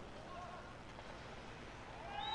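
Faint outdoor bandy-rink ambience during play: a low steady hum and hiss, with faint distant voices.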